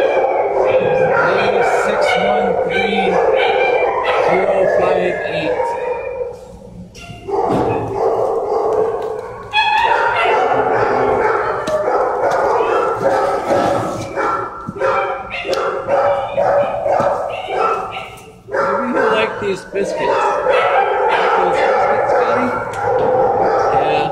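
Shelter dogs barking and yipping in the kennels, nearly continuous and overlapping, with two brief lulls.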